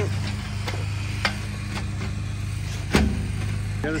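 A steady low hum like an engine running, with a few light clicks and one sharper knock about three seconds in from a galvanized metal tub being handled on a wooden countertop.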